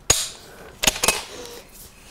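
A sharp metallic click from a bolt-action precision rifle as its trigger is dry-fired. A little under a second later come two quick clacks, a fifth of a second apart, as the rifle is handled.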